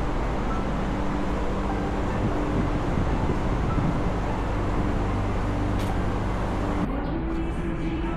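Steady outdoor rumble of road traffic with a low hum. About seven seconds in it cuts off abruptly and background music begins.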